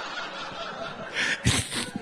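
Audience laughter, with a man's breathy snickering close to a handheld microphone coming in about a second in.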